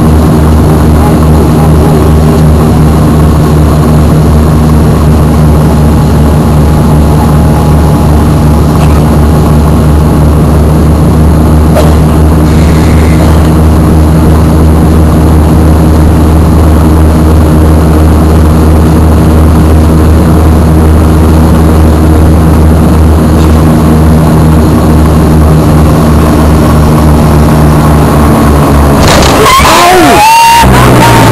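Cabin drone of a Dash 8-300's two Pratt & Whitney Canada PW123 turboprops and propellers: a loud, steady roar with a low, even hum of propeller tones that holds without change. It cuts off abruptly just before the end.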